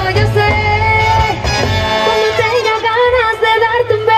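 A live tropical dance band playing, with a lead vocal over brass, bass and percussion. The singer holds wavering notes in the second half.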